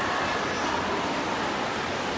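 Steady wash of water noise from swimmers splashing through a race, with faint voices in the background.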